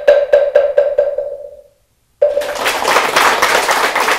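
A moktak (Korean Buddhist wooden fish) struck in a quickening roll that fades away, marking the close of the dharma talk. Just over two seconds in, the audience breaks into applause.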